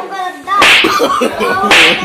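Two loud slaps about a second apart, as a man swats a boy with a cloth in a comic beating.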